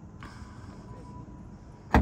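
A single sharp clunk near the end as a Tesla Model 3's front trunk latch releases, opened remotely from a phone.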